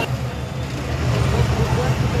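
Steady low rumble of a motor vehicle's engine running, with people's voices faintly mixed in.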